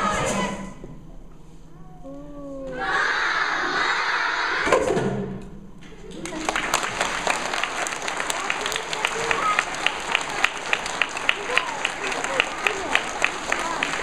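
A children's choir's last sung note dies away, then the audience cheers and applauds, with a steady run of sharp individual claps close to the microphone, several a second, over the general applause.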